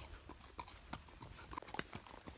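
Horse's hooves clopping on a trail at a walk: a few irregular hoof strikes, two of them louder, about a second in and near the end.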